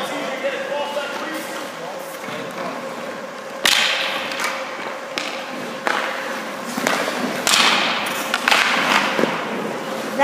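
Ice-hockey pucks cracking off sticks and goalie pads, with skate blades scraping the ice, during shooting drills; the loudest crack comes a little over a third of the way in, and four more knocks follow, some trailed by a short scrape. A steady hum runs underneath.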